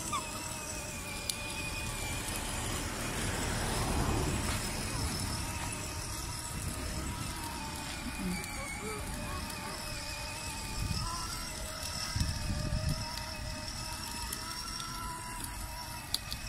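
Child's battery-powered ride-on toy motorcycle running: a thin, steady electric-motor and gear whine over the low rumble of its small plastic wheels on asphalt.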